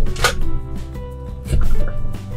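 Plastic toy cutting unit slicing a Cutie Stix stick into beads: two sharp clacks about a second and a half apart, over background music.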